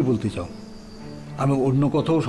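Dialogue with a steady low background music drone beneath it; the speaking pauses for about a second in the middle. A faint thin high whine is heard during the pause.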